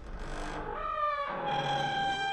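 Logo-animation sound effect: a low rumble fades out while a layered pitched tone slides up and down, then settles into a steady held note about halfway through.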